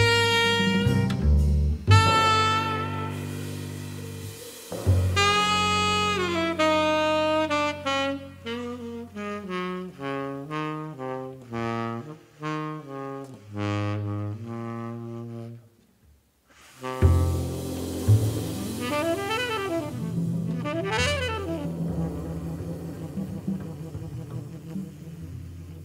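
Tenor saxophone playing jazz: held notes, then a long run of notes stepping down in pitch, a brief break, and two quick swoops up and down in pitch near the end.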